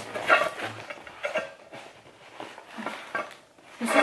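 A small cardboard box being handled and opened, with irregular rustles, scrapes and light knocks.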